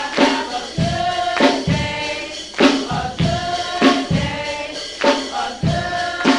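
Youth choir singing a gospel song over a drum and percussion beat, with a strong hit about every second and a quarter.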